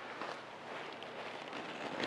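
Faint steady outdoor background noise, a light even hiss with no distinct events.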